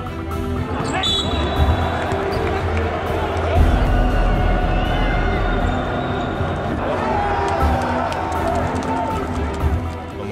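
Basketball game sound in an arena: a ball bouncing on the court amid crowd noise and voices, with background music with a steady bass line running underneath.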